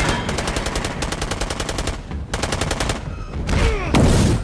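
Automatic gunfire in a film soundtrack: two long bursts of rapid shots, about ten a second, with a short break about two seconds in. Near the end comes a loud hit with falling whines.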